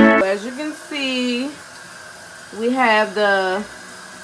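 A music track cuts off at the start, followed by a person's voice in a few short, drawn-out phrases with gaps between them.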